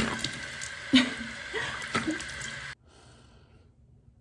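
Bathroom tap running cold into the sink while a face is rinsed by hand, with splashing and a few short gasps at the cold water. The running water stops abruptly about three-quarters of the way through, leaving a faint hush.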